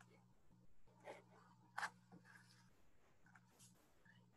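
Near silence: faint room tone over a video call, a low hum that cuts in and out, with three soft clicks.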